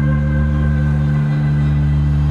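Live band holding one steady low chord on electric bass and guitars, with no singing over it.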